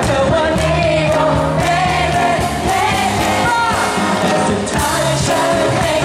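Live band playing a pop song: lead vocals sung over acoustic guitar, cello and drums, amplified through the stage speakers.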